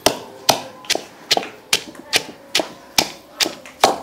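Wooden pestle pounding young green tamarind and chili into a wet paste in a mortar, in steady strokes about two and a half a second, about ten sharp knocks in all.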